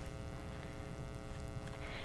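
Quiet room tone with a faint, steady electrical hum: several even pitches held without change.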